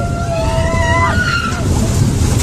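Mini roller coaster train rumbling along its track as the ride gets going, with a long high-pitched squeal over it in the first second.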